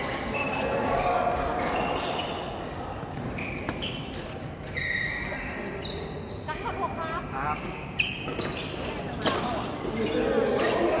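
Badminton doubles rally in a large echoing hall: rackets hit the shuttlecock with sharp cracks, the two loudest about two seconds from the end and just before it. Short high squeaks of shoes on the court floor and voices carry through the hall in the background.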